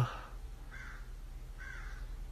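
Two short, faint calls about a second apart, like a bird's, heard over a low room hum.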